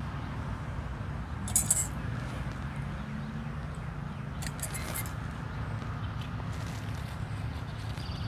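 Bypass hand pruners snipping grapevine shoots, short clicks about a second and a half in and again around the middle, over a steady low hum.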